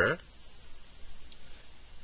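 A single faint computer mouse click about a second in, over quiet room tone.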